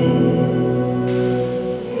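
Church choir and pipe organ holding a sustained chord, which fades away about a second and a half in.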